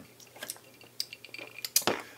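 Ice cubes clinking in short cocktail glasses as they are sipped from, a few light clicks, with a louder knock near the end as a glass is set down.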